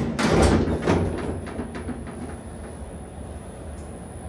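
Elevator car arriving and its doors opening: a loud clunk and rattle, then a run of lighter clicks and knocks over the next couple of seconds. A thin, high, steady whine sets in about a second in.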